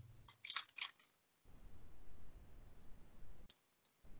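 A few short, sharp clicks in the first second and one more about three and a half seconds in, over faint room noise.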